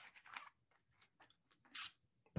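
Near silence: room tone with a few faint scattered clicks and a short soft hiss near the end.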